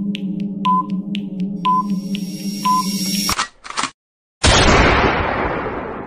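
Quiz countdown sound effects: quick clock ticks with a short beep once a second over a steady synth drone, building with a rising noise swell. About three and a half seconds in the countdown stops with two short hits and a brief silence, then a loud burst fades away slowly as the gifts are revealed.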